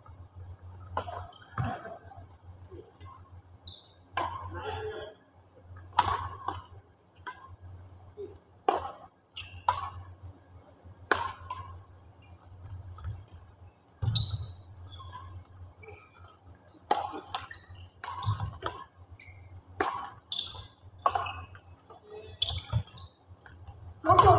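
Badminton rackets striking a shuttlecock in a doubles rally. Sharp smacks come about every one to two seconds and ring in a large hall.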